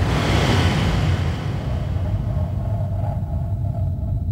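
Intro sound effect under a logo card: a noisy whoosh hits at the start and fades away over about two seconds, over a steady deep rumble.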